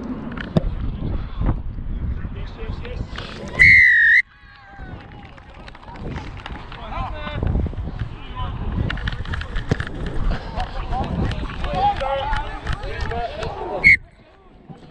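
Referee's whistle blown in one loud shrill blast of about half a second, about four seconds in, with a slightly wavering pitch. Around it come low wind rumble and rustle on the body-worn microphone and faint distant shouts from players. Another short whistle blast starts right at the end.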